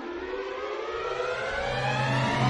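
Orchestral music: the orchestra, strings prominent, swells in a steady crescendo while the pitch glides upward.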